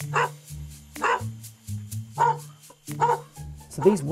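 Dogs barking, about four short barks roughly a second apart, over a background music bed.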